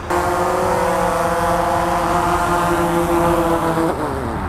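DJI Phantom 4 quadcopter's four propellers giving a steady, loud multi-tone hum as it comes in to land. The sound cuts off abruptly near the end.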